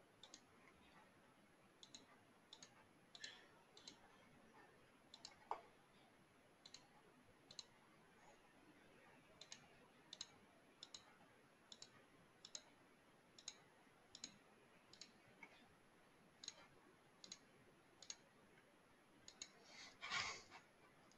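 Faint computer mouse clicks, irregularly spaced at about one or two a second and sometimes in quick pairs, as points of a zone outline are placed one by one on a map. One click about five and a half seconds in is louder than the rest.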